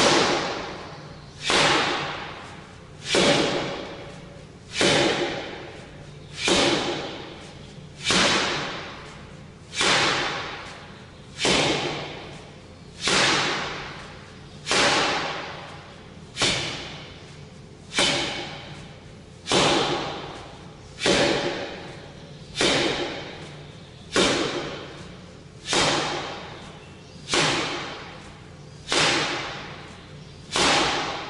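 Repeated forearm strikes on a 'Kamerton Shilova' tuning-fork makiwara during forearm conditioning, about one every second and a half. Each is a sharp hit that rings on and dies away over about a second.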